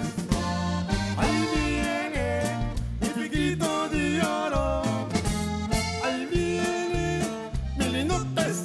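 Live norteño band playing an instrumental break between verses: a Cantabella Rustica button accordion carries the melody in quick runs over guitar, bass and drums.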